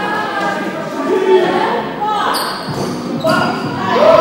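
Dodgeballs thudding and bouncing on a wooden hall floor, a few sharp hits, among players' shouts and calls.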